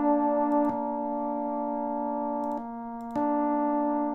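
Two held recorded notes sounding together as a major third, B-flat below and D above, with the D played slightly sharp so the pair is not quite in tune. The upper note drops out for about half a second near three seconds in, then comes back.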